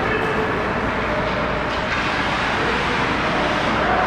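Steady rumbling hiss of an ice hockey rink in play, with skates scraping the ice near the net.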